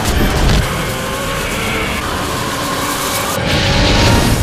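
Animated-film soundtrack of music mixed with loud, dense action sound effects, a continuous rushing noise under held musical notes. A brighter hissing rush swells near the end.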